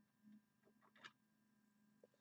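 Near silence, with a few faint clicks about a third of a second and a second in from plastic graded-card slabs being handled.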